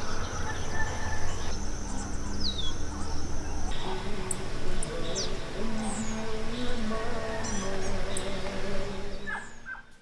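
Outdoor countryside ambience: birds chirping with short whistled calls throughout, over a low rumble that stops abruptly about four seconds in. After that, lower drawn-out calls sound in the background, and everything fades out near the end.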